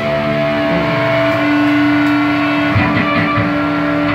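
Live electric guitar through an amplifier holding long, steady droning notes as a song begins, with a strong held note coming in about a second in.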